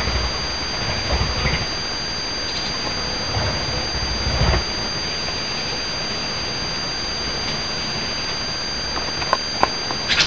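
A steady high-pitched whine of two unchanging tones over a constant hiss, with low rumbles near the start and about four seconds in, and two faint clicks near the end.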